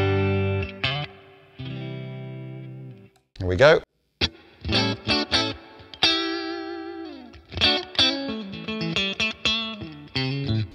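Fender Player Plus Stratocaster played through a Boss Katana 50 amp on a completely clean sound: strummed chords and picked single notes that ring out, with one note sliding down in pitch about six seconds in.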